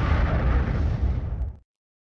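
Loud, deep explosion-like rumble that cuts off suddenly about one and a half seconds in.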